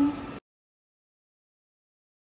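A woman's voice ends a phrase at the very start, and the sound cuts off suddenly a moment later, leaving complete silence.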